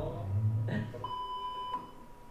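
A single steady electronic beep, one pure tone lasting under a second, starting about a second in.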